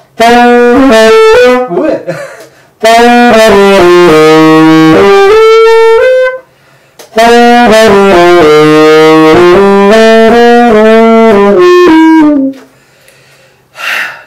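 Tenor saxophone played loud in three melodic phrases: a short one at the start, then two longer runs of notes, with brief pauses between them.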